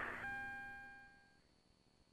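A faint ringing tone, like a chime, fading away over about a second, then near silence.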